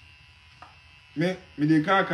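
Faint, steady buzz of an electric shaver running over a man's head. A man's voice talks loudly over it from a little past a second in.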